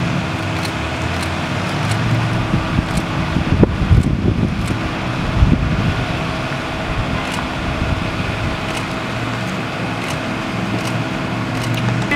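A steady mechanical hum with a few constant tones, overlaid by an uneven low rumble that grows louder about four to six seconds in.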